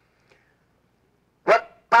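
Near silence: room tone for about a second and a half, then a man's voice says a single word into a microphone.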